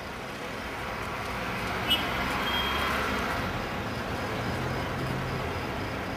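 Road traffic noise, with a vehicle passing that is loudest around two to three seconds in, and a short click just before two seconds.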